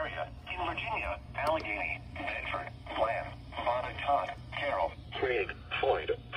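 NOAA Weather Radio's automated announcer voice reading out a list of county names, heard through a weather alert radio's small speaker with a narrow, tinny sound. A steady low hum runs underneath.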